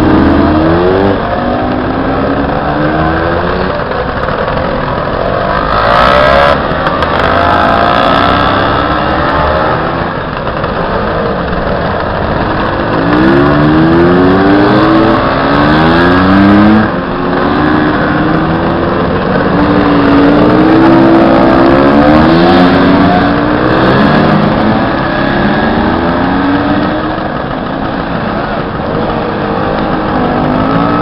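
Many classic motor scooter engines running and revving one after another as a column of scooters pulls away, with engine notes rising and falling over a steady mass of idling.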